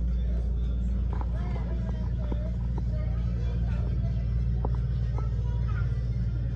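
Steady low rumble of small wire shopping carts rolling on a hard store floor, with faint voices and babble mixed in.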